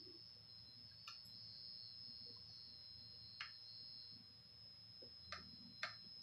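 Near silence: room tone with a faint steady high-pitched whine and four faint, scattered clicks.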